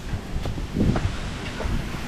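Wind buffeting the microphone, with stands of tall bamboo rustling in the wind.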